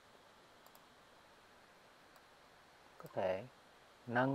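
Faint computer mouse clicks over quiet room tone: two close together a little over half a second in, another about two seconds in. A short voiced sound from a person comes about three seconds in.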